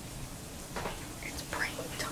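A person whispering twice, about a second in and again near the end, over a steady low background noise.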